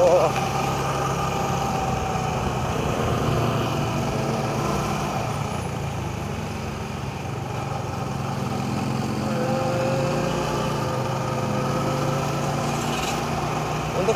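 Motorbike engine running steadily while riding in city traffic, heard from the rider's seat with road and wind noise.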